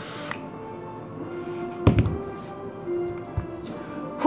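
The hiss of a draw on an e-cigarette box mod ends just after the start. Faint background music with held tones runs under it, and there is a sharp thump about two seconds in, with a softer knock later.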